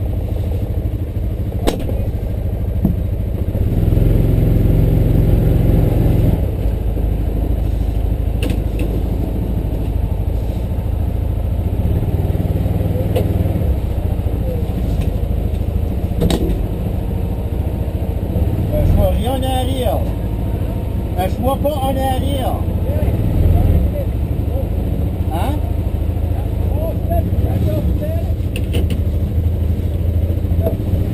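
Off-road vehicle engine running at low speed, a steady low drone that swells briefly about four seconds in, with a few sharp clicks and knocks over it.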